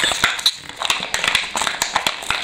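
Plastic blister pack of a die-cast toy car being pried and torn open from its card: a run of irregular sharp crackles and clicks, with a short lull about half a second in. The pack is proving hard to open.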